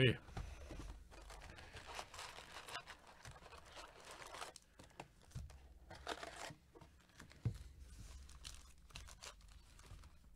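Trading-card hobby box being torn open and its foil card packs crinkling and rustling as they are handled and lifted out, with a few soft knocks of the cardboard box.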